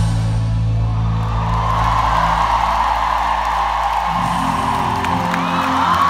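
Live pop concert music over an arena sound system: a held low chord that changes about four seconds in, under a large crowd cheering that swells from about a second in.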